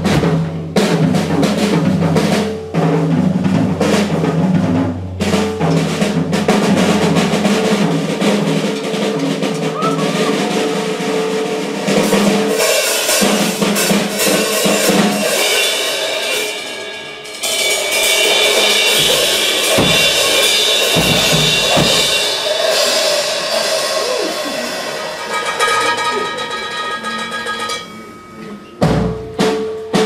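Jazz drummer taking a solo on a drum kit, snare and bass drum strokes with cymbals over them, while the horns stay silent.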